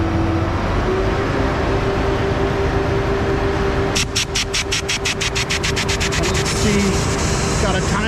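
Diesel engine of a concrete boom-pump truck brought up to a higher idle about a second in, then running steadily. About four seconds in, a rapid ticking of about nine clicks a second starts and fades out by about seven seconds, as the pump is switched on.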